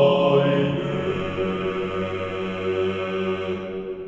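Choral chant music with long held notes, gradually fading out.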